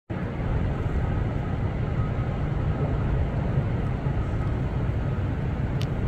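Steady low rumble of city street traffic, with one short click near the end.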